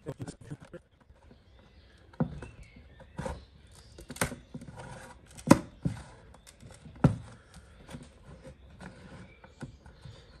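The plastic battery case of a Ninebot G30 Max scooter being pried open by hand: about five sharp clicks and snaps as the lid works loose, the loudest a little past halfway, with faint scraping and handling knocks between.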